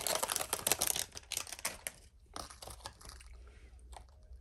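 Clear plastic bag crinkling as a plush keychain is pulled out of it: dense, fast crackling for the first second and a half, then a shorter rustle about two and a half seconds in as the bag is handled.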